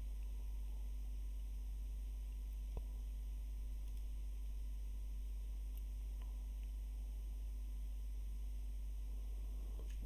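Steady low electrical hum of the recording setup, with a single faint computer-mouse click a little under three seconds in and a few fainter ticks later.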